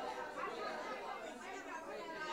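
Background chatter of many people talking at once, a steady murmur of voices with no single speaker standing out.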